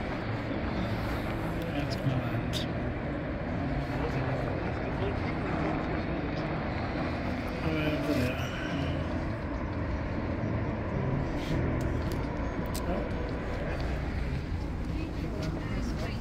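Steady rumble of road traffic from below, mixed with wind, and indistinct voices of people talking in the background.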